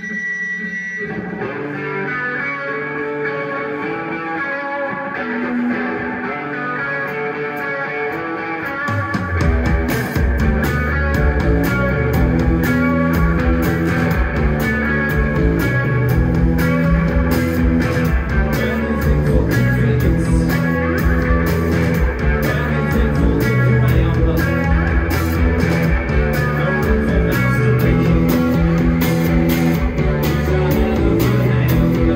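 A live rock band begins a song. Electric guitar plays alone at first, then drums and bass guitar come in about nine seconds in, and the full band plays on.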